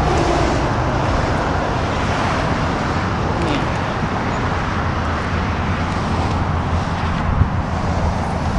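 Steady low rumble of outdoor background noise, like road traffic, with one short knock about seven seconds in.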